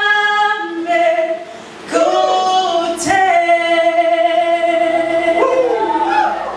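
Singing voices holding long sustained notes, with short swooping slides between phrases; a sharp click cuts in about three seconds in.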